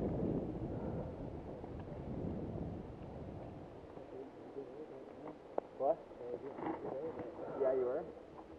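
Mountain bike rolling on a dirt singletrack, picked up by a helmet camera: rumbling tyre and wind noise that dies away after about three seconds as the bike slows. Then short stretches of indistinct voices from the riders ahead, with one sharp click in the middle.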